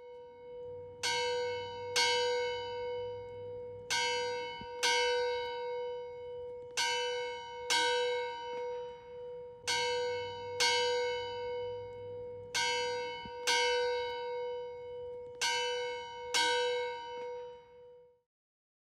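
A church bell tolled in pairs: two strokes about a second apart, the pair repeating about every three seconds, twelve strokes in all. Its low hum note rings on steadily between strikes.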